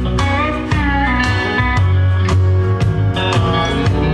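Country-swing band music with an electric guitar lead over a steady bass line, playing fills with bent notes in the first half.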